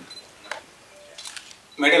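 A pause in a man's speech through a PA microphone, with a single sharp click about halfway through and a few faint clicks after it; his voice comes back just before the end.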